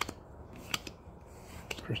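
Baseball trading cards being flicked through by hand, the stiff card edges giving three sharp clicks as each card is slid off the stack.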